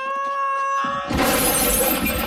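Cartoon sound effects: a long held tone rising slightly in pitch, then, about a second in, a sudden loud crash of shattering glass.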